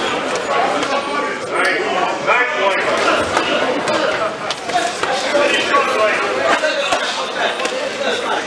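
Ringside voices and arena crowd calling out during a boxing bout, overlapping and continuous, with a few sharp slaps of gloved punches landing.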